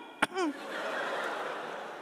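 A sharp click, then a man's short, high hummed "mm" falling in pitch, put on as a comic feminine voice. An audience then laughs, the laughter swelling about a second in and fading away.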